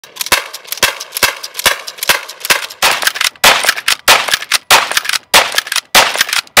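Rapid string of lever-action rifle shots, about two to three a second. The shots are evenly spaced in the first half and come louder and closer together later, each with a ringing tail.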